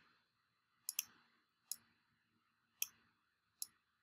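Faint, sharp clicks of a computer mouse: a quick double click about a second in, then single clicks spaced about a second apart.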